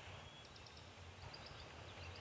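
Faint outdoor ambience with a low steady hum and a few short, high chirps of distant birds from about a second in.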